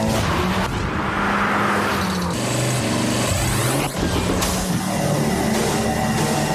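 Volvo S60 R's turbocharged five-cylinder engine pulling hard through the gears. Its pitch holds, drops at a shift about two seconds in, climbs again, and rises once more after a brief whoosh near four seconds.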